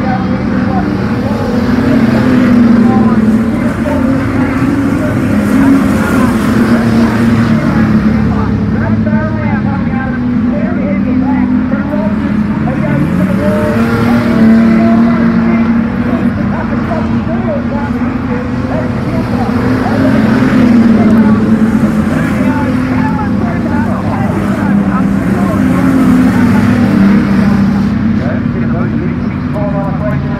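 A field of street stock race cars lapping a dirt speedway track. The engines rise and fall in pitch, swelling loud each time the pack comes past and fading as it moves away, several times over.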